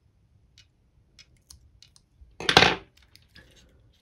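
Faint small clicks of fine-pointed fly-tying scissors snipping off the waste partridge fibres at the bead. About two and a half seconds in there is one louder, brief noise, the loudest thing here.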